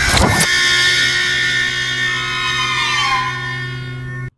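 A car door shutting with a thud at the start, over background music of steady held tones, one of which slides down in pitch about three seconds in.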